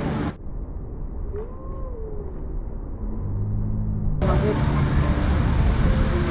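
Wind buffeting the microphone with a steady low rumble. About a second and a half in, a single gull gives a short call that rises and falls in pitch.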